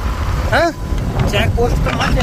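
Wind buffeting the microphone and a steady low rumble of a moving motorcycle on the road, with a man's brief rising spoken question about half a second in.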